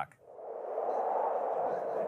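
A steady, hollow whooshing noise like wind, swelling in just after the speech stops and then holding even.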